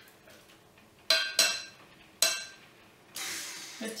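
A utensil knocking against crockery as butter is scraped off into a ceramic mixing bowl: three sharp, ringing clinks, then a brief rushing noise near the end.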